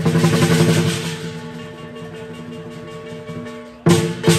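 Lion dance percussion: drum with cymbals. A dense drum roll at the start fades down over a few seconds under steady ringing, then a sudden loud strike just before the end sets off a new beat.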